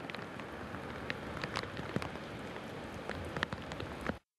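Steady outdoor hiss with irregular light ticks and crackles scattered through it.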